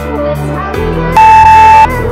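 Background music with guitar; a little over a second in, a single loud steady electronic beep sounds for over half a second. It is the workout timer's signal that an interval has ended.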